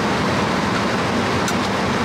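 Car air-conditioning blower running steadily inside the cabin, a constant rushing noise over a faint low hum, with a faint click about one and a half seconds in.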